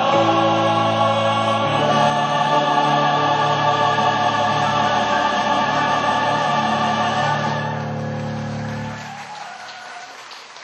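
A large mixed chorus of male and female voices singing long held notes over instrumental backing, with the music ending and fading out about nine seconds in.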